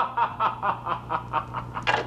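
A man laughing in short, rhythmic ha-ha bursts, about four a second, louder near the end.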